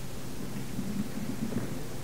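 Steady hiss and low hum of an old lecture recording, with faint low mumbling around the middle.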